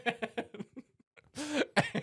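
A man laughing hard: a quick run of breathy bursts, a short breathless pause about halfway, then more voiced laughter near the end.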